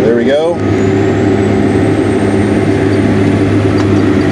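John Deere 9420 four-wheel-drive tractor's six-cylinder diesel heard from inside the cab, taking up load as it is put into gear with a seven-shank ripper still in the ground and no clutch used. About half a second in a deeper engine note comes in and holds steady, while a faint high whine rises slowly.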